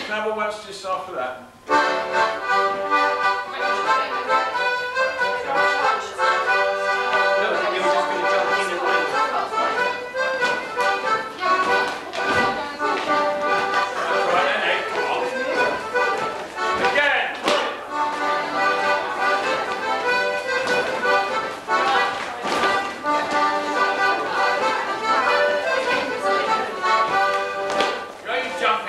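Accordion playing a morris dance tune, starting about two seconds in after a brief spoken word. A few sharp knocks sound over the music.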